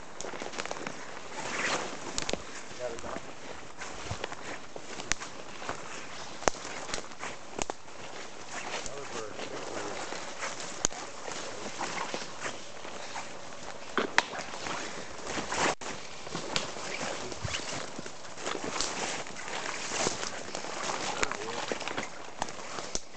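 Footsteps pushing through woodland undergrowth, with irregular crackles and snaps of twigs, brush and dry leaves.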